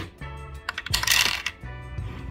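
Small hard plastic Playmobil accessories, among them a megaphone, clattering as they drop into the toy boat's plastic storage compartment. There are a couple of sharp clicks and a brief rattle about a second in.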